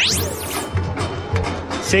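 Radio broadcast transition effect: a fast rising sweep in pitch in the first half-second, then a short stretch of music with a few sharp hits.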